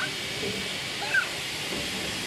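Steady hiss of steam from a Victorian Railways R class steam locomotive as it is turned on a turntable. Two short high chirps come at the start and about a second in.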